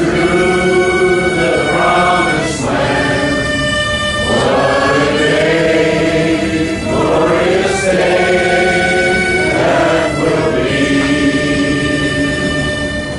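Stacked multi-deck harmonica played as a hymn-like tune in sustained chords, changing every second or two, with a brief breathy rush at several of the chord changes.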